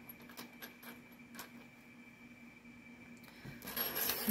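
Faint, scattered clicks of a gold-tone Napier chain-link necklace being handled on a wooden table, over a steady faint hum. Near the end the chain is lifted and its links clink louder.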